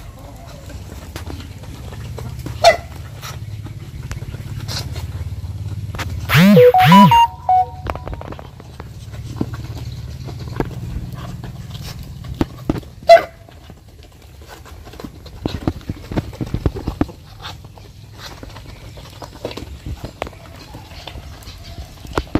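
Muscovy ducks feeding together from a pan, with sharp pecking clicks and scattered ticks over a steady low rumble. About six seconds in comes a loud two-part bird call, rising and falling in pitch, the loudest sound.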